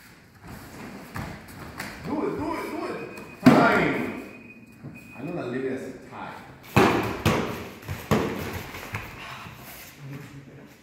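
Taekwondo sparring: kicks thudding against padded chest protectors and bare feet slapping the foam mat, with several sharp thuds, the loudest about three and a half seconds in and three more close together in the second half. Voices are heard between the impacts.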